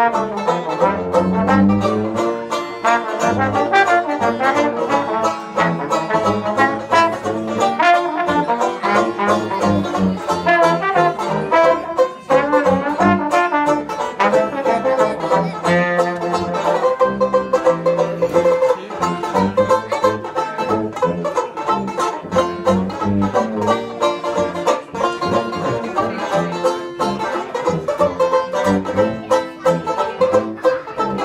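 Instrumental break played by a trombone, banjo and sousaphone: the trombone carries the tune over strummed banjo chords and the sousaphone's bass line.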